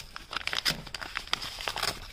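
Paper envelopes and greeting cards rustling and crinkling as they are handled and pulled apart, in a string of irregular small crisp crackles.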